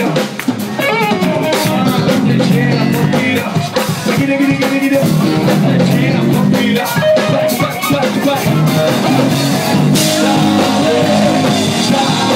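Live band playing loudly, with drum kit, electric guitar and bass under a lead singer, heard from the crowd in a small club.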